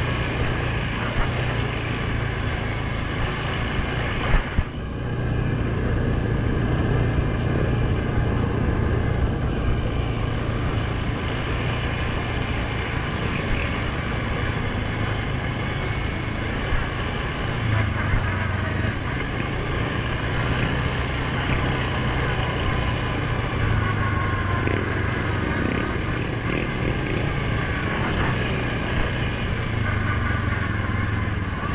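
2019 Suzuki King Quad 750's single-cylinder four-stroke engine running steadily under way on a dirt trail, with two quick knocks about four and a half seconds in.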